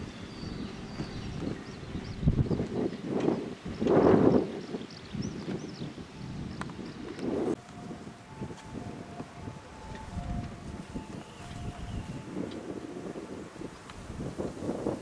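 Wind buffeting an outdoor microphone in irregular gusts, the strongest about four seconds in. There are faint high chirps in the first few seconds, and a faint two-note tone alternates in the middle.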